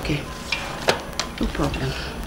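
Paper gift bag and packaging rustling and crinkling as they are handled, with several sharp clicks and crackles.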